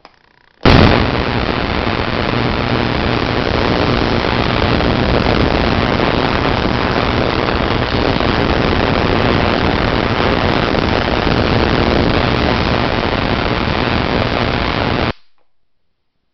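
Spark gap fed by a 10 kV transformer firing continuously: a loud, rapid crackling buzz that starts abruptly about half a second in and cuts off suddenly about a second before the end.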